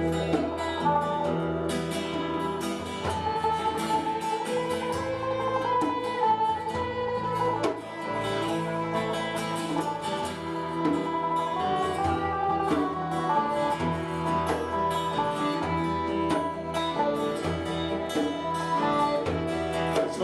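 Folk band playing an instrumental passage: strummed acoustic guitar and bass underneath, with fiddle and whistle carrying the melody.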